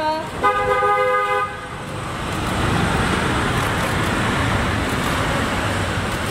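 A car horn sounds once, held for about a second, then steady motor-vehicle and traffic noise.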